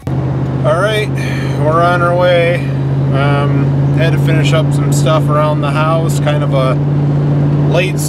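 Steady low drone of a vehicle's engine and road noise heard inside the moving cab, under a man talking.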